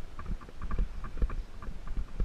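Mountain bike riding over a bumpy sandy dirt track, heard up close on the bike: irregular rattling knocks, several a second, over a low rumble from the tyres and frame.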